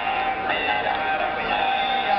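Sardinian traditional music playing: a steady held drone with a melody moving over it, and what sounds like singing.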